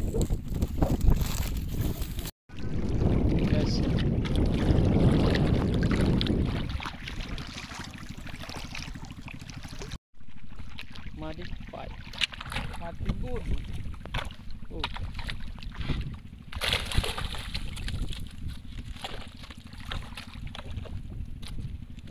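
Wind buffeting the microphone and water sloshing around someone wading through shallow water, loudest in the first few seconds, with brief handling clicks.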